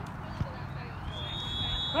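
Open-air sideline ambience at a soccer match: a low, even background with a faint thud about half a second in. About a second in, a thin, steady high tone rises and holds. Right at the end, spectators cry out 'Oh!'.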